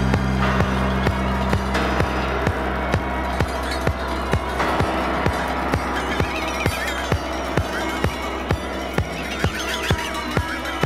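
Latin disco music played from a vinyl record, with a steady drum beat a little over two beats a second. A held bass chord drops away after about two and a half seconds.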